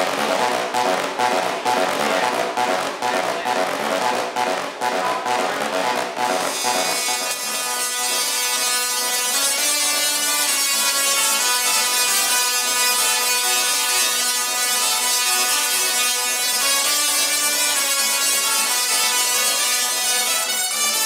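Musical double-resonant solid-state Tesla coils (DRSSTCs) playing music through their spark discharges. The first six seconds or so are short rhythmic notes from one coil; after that the sound becomes sustained chords as more coils play together.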